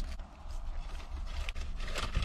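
Paper food bag rustling and crinkling faintly as a bread roll is bitten and chewed, over the low steady hum inside a car.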